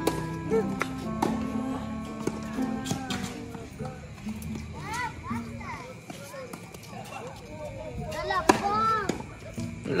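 Tennis ball being struck by rackets and bouncing on a hard court: a few sharp knocks, the loudest near the end. Light background music plays under the first few seconds, and children's voices call out.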